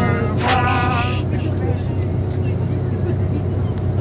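Steady low drone of a moving coach, engine and tyre noise, heard from inside the passenger cabin while it drives.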